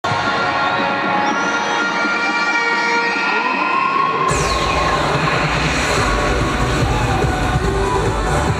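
Crowd cheering and shouting for a cheerleading team. About four seconds in, loud electronic routine music cuts in with heavy bass and a falling swoosh, with the cheering carrying on underneath.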